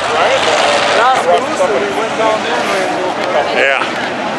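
Field of dirt-track Modified race cars running slowly around the track under caution, their engines a steady background drone. People are talking over it throughout, with a short "yeah" near the end.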